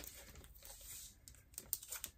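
Faint rustling and crinkling of packaging as the contents of a mail package are handled, with a few small clicks near the end.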